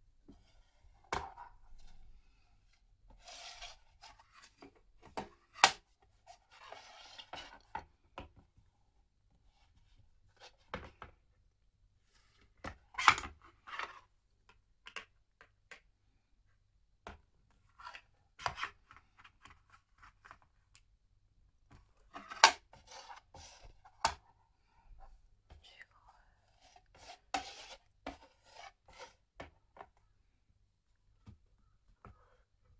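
A plastic anime figure and its black plastic display base being handled and pushed together: scattered clicks and knocks of plastic on plastic and on the table top, with a few short rustles.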